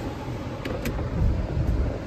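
Car cabin noise: a low rumble under a steady hiss, with two small clicks just under a second in.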